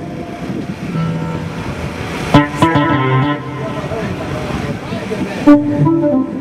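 A rock band on stage between songs: a voice and a few short guitar and keyboard notes over a steady noisy hiss, with a sharp start to a sound about two and a half seconds in and another near the end.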